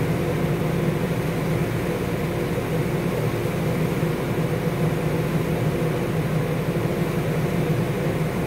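Steady low drone of running machinery, even throughout with no breaks or changes.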